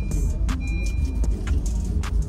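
Steady low rumble inside a car's cabin, from the engine running and the car on the road, with a few faint clicks.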